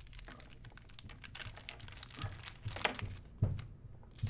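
Trading cards and plastic being handled and set down on a table: soft rustling and crinkling with scattered light taps and clicks, the sharpest a little under three seconds in and again shortly after.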